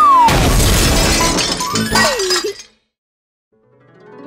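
Cartoon sound effects: a loud crash with shattering and a descending whistle, mixed with music, which cut off about two and a half seconds in. After about a second of silence, a chiming tune fades in near the end.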